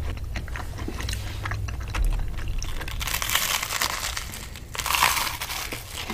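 Close-up chewing for the first few seconds, then two long, crisp crunches as toasted garlic bread is bitten into, about three seconds in and again about five seconds in.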